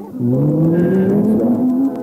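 A low buzzing tone with a stack of overtones, sliding slowly and steadily upward in pitch for almost two seconds.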